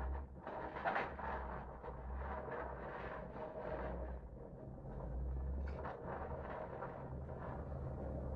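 Low, uneven rumble of heavy vehicles, with a rougher grinding noise above it that swells and fades several times.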